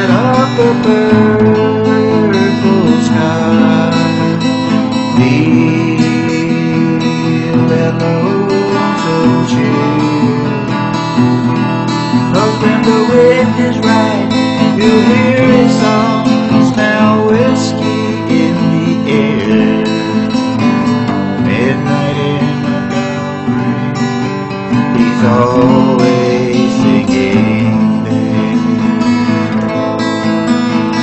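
Instrumental break in a country song: strummed acoustic guitar with a melody line gliding above it.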